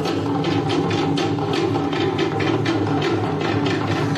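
Music with a fast, steady percussion beat.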